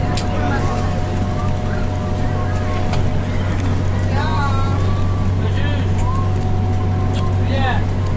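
Bus engine running with a steady low drone and road noise, heard from inside the cabin as it drives. Passengers' voices are heard briefly over it a few times, about four seconds in, around six seconds and near the end.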